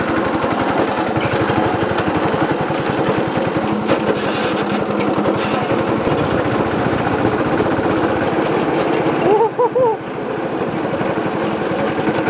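Go-kart's small petrol engine running steadily under way, with a rapid, even putter.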